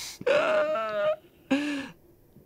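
A person wailing: one long, high, wavering cry, then a shorter, lower moan near the end.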